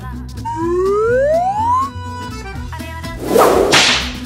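Cartoon sound effects over background music: a rising whistle-like glide in the first half, then a loud whip-like whoosh near the end as the cell's barred gate swings shut.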